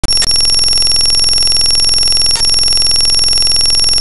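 A loud, steady electronic tone, buzzy and dense with two high ringing pitches, broken by brief glitches about a quarter second in and just past the middle, then cutting off abruptly.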